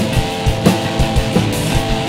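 Rock band playing live: electric and acoustic guitars strumming chords over a drum kit's regular beat, in a stretch without a vocal line.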